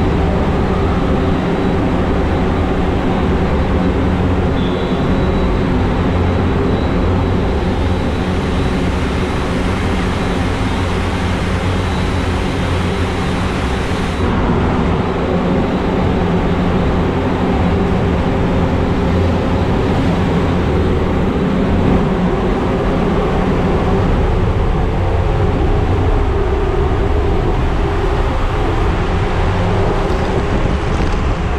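Large blower of a wind-driven water slide running: a loud, steady whirring drone with several low humming tones.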